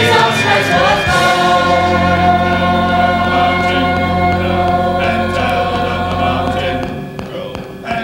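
High school choir singing sustained chords, with a low note held underneath from about a second and a half in that drops away near the end, where the singing thins out.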